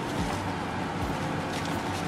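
Chicken breasts sizzling steadily in olive oil in a frying pan.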